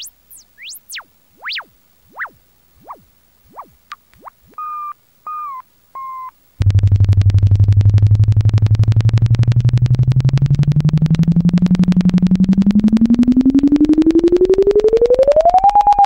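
Electronic synthesizer sounds in the outro of a rock song. First come scattered short blips that slide steeply up and down in pitch, with a few brief wavering held tones. About six and a half seconds in, a loud, rapidly pulsing buzzy tone starts suddenly, climbs slowly from low to mid pitch, and begins to wobble up and down near the end.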